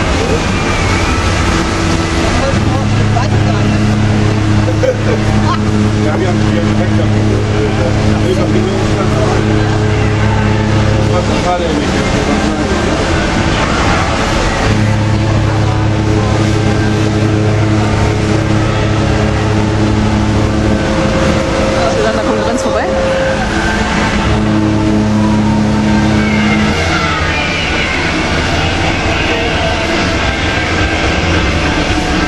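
Deep cruise-ship horn sounding three long blasts, the first about nine seconds long and the last the shortest. A higher horn tone is held in between, over a steady background of voices and harbour noise.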